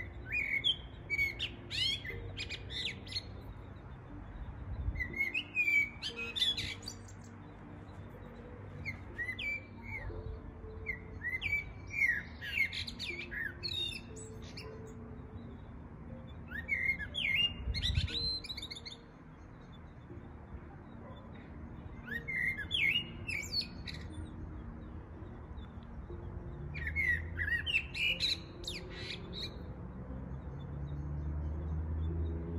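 Male common blackbird singing: about seven short fluty, warbling phrases a few seconds apart, each ending in a high, squeaky twitter. This is the song males use to attract a mate.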